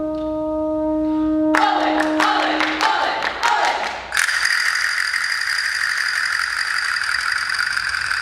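A brass ensemble holds a chord, then a quick irregular run of sharp claps and castanet-like clicks with a few short brass notes. About four seconds in, a loud, bright, steady sustained sound starts abruptly and holds.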